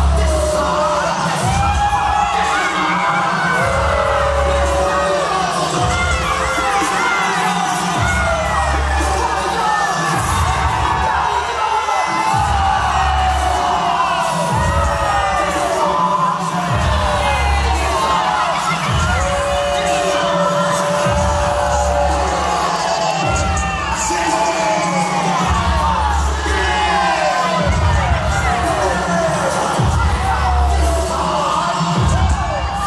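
Heavy krump battle beat played by a DJ, with deep sustained bass notes recurring every few seconds, under a crowd of spectators shouting and cheering to hype the dancer.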